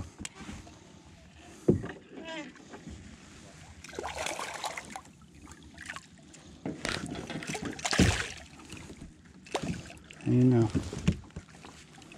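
A hooked smallmouth bass splashing at the water's surface right beside a kayak as it is brought in to be landed. There are two bursts of splashing, about four seconds in and again around seven to eight seconds, with a few sharp knocks between them.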